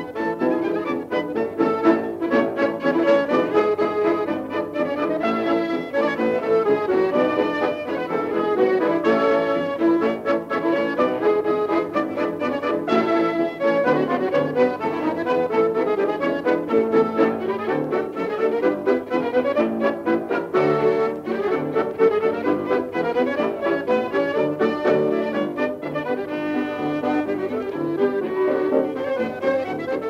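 A polka played by a dance orchestra, with brass instruments carrying the tune. It comes from a 1934 recording, with the dull, narrow top end of an old disc.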